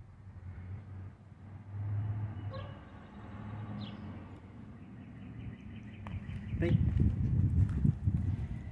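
Outdoor background with a steady low hum and two short high chirps. About a second and a half before the end a person gives a brief exclamation, followed by louder rustling and footfall-like thumps.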